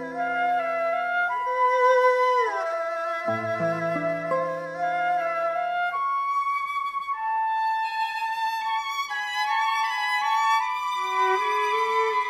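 Chamber music: a sustained erhu melody with vibrato and a downward slide about two seconds in, over low plucked classical-guitar notes. From about six seconds in the low notes drop out and flute and violin carry higher lines.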